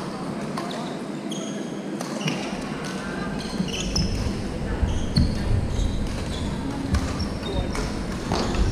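Badminton games in a large wooden-floored hall: many short, high squeaks of court shoes on the floor, a few sharp clicks of rackets hitting shuttlecocks, and distant players' voices. A low rumble builds from about halfway through.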